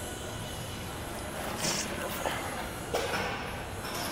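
Steady background noise of a gym, with a short high hiss a little under two seconds in and a light click about three seconds in.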